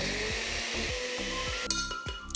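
Countertop blender running steadily, puréeing huancaína sauce, then cutting off about one and a half seconds in.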